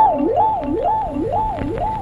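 A single wailing tone that rises quickly, holds at the top, then falls, repeating about twice a second like a siren warble.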